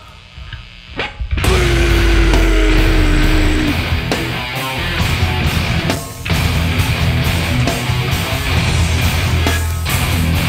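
A live heavy metal band, with distorted electric guitars, bass and drums, playing loud. The band nearly stops at the start, then crashes back in after about a second and a half with a heavy low-tuned riff and a held guitar note, and makes another brief break about six seconds in.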